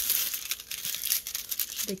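Clear plastic film over a diamond painting canvas crinkling and crackling as a hand lifts and handles it, a continuous dense rustle.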